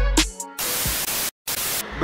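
The tail of an intro music track, then a burst of TV-style static hiss, cut by a split-second total dropout in the middle, as a glitch transition effect.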